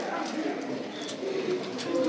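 Voices speaking indistinctly, low and murmured, with a few faint clicks.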